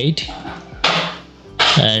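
A man's voice narrating, pausing for about a second and a half, with a short hiss about a second in before he speaks again.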